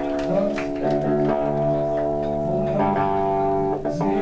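Electric guitar ringing out held chords through the venue's amplification, changing chord about a second in and again near the end, with no drums.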